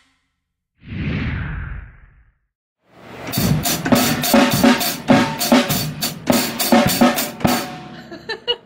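A short burst of noise about a second in. Then, from about three seconds in, an acoustic drum kit is played in a steady groove, with bass drum, snare and Zildjian cymbals struck in an even rhythm, and the playing stops just before the end.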